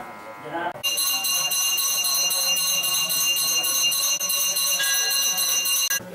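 Puja hand bell rung rapidly and continuously, a bright steady high ringing that starts about a second in and cuts off abruptly near the end.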